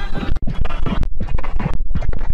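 Loud, harshly distorted logo jingle audio put through video-editor sound effects, chopped into rapid stuttering fragments with a brief dropout about half a second in.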